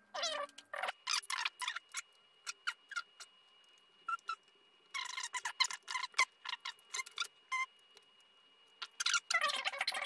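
Fast-forwarded, pitched-up sound of a small Phillips screwdriver taking tiny screws out of a Lenovo ThinkPad T430's screen frame: a quick scatter of high clicks and chirps.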